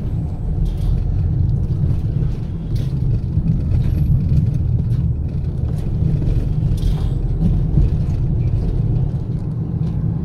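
Steady low rumble of a car's engine and tyres, heard from inside the cabin while driving along a road.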